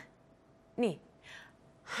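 Speech: a single short spoken word, then a brief breathy exhale, with quiet room tone around them.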